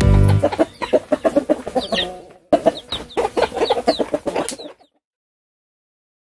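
Hen clucking in quick runs, mixed with the high cheeping of chicks, as a music track ends at the start. The calls break off briefly about halfway through and stop abruptly just under five seconds in, followed by silence.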